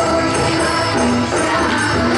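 Krishna bhajan sung by a group of children's voices with a lead singer on microphone, accompanied by tabla, dholak and keyboard, with a steady jingling percussion.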